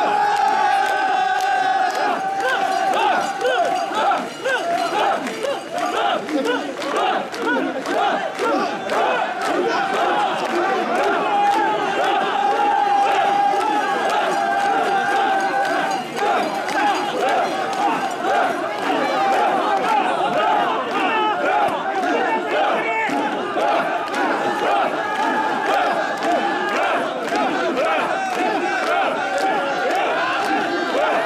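A large crowd of mikoshi bearers shouting together as they carry the portable shrine, many voices overlapping in a loud, unbroken din.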